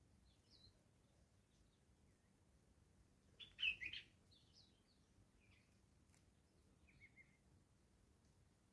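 Wild birds chirping: faint, scattered short high calls, a sharp, much louder burst of calls about halfway through, and a short run of quick notes near the end.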